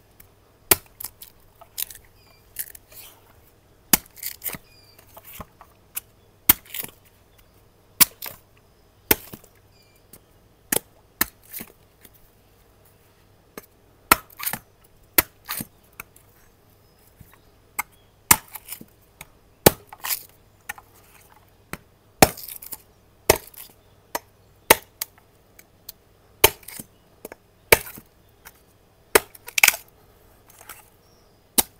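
Large knife chopping into the husk of a green coconut: a run of sharp, irregular blows, about one or two a second.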